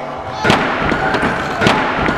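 Scooter decks and wheels banging and clattering on plywood ramps, with a short ring in the big hall: a loud bang about half a second in, a few smaller knocks, and another loud bang near the end.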